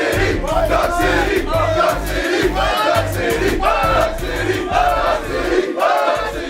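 A team of basketball players celebrating a win, shouting and chanting together over music with a steady bass beat about twice a second.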